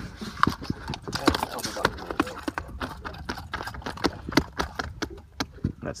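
Irregular knocks and taps, several a second, from a freshly landed snapper being handled on the hard boat surface.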